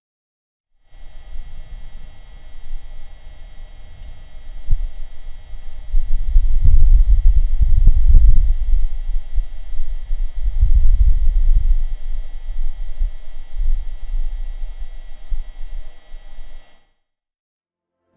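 Wind on Mars picked up by a microphone on NASA's Perseverance rover: a low rumble that swells in two strong gusts midway. Over it runs a steady hum from the rover itself. The sound starts about a second in and cuts off about a second before the end.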